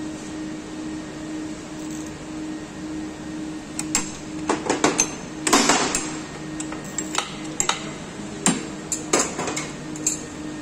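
Sharp metallic clinks and knocks from hand work on a Honda PCX scooter's open belt-drive variator and the tools around it, coming in a cluster from about four seconds in and another near the end. A steady low hum runs underneath.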